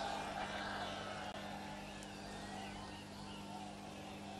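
Quiet pause in speech: a steady low hum over faint background noise.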